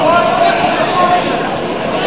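Crowd babble: many overlapping voices and faint shouts from spectators, with no single voice standing out.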